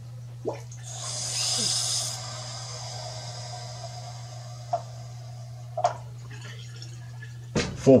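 Water rushing through the plumbing as the cold water supply valve is opened to pressurize a newly fitted PEX push-fit tee and quarter-inch line: a hiss that swells about a second in, then settles to a steady hiss with a faint whistle. A few small clicks come through it.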